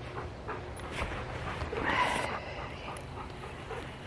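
Golden retriever panting close to the microphone, with a short louder sound about two seconds in.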